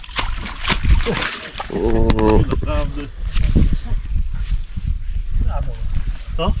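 Handling noise as a carp is shifted on a wet unhooking mat: a quick run of rustles, slaps and clicks in the first second or so. A man's short voiced sound comes about two seconds in.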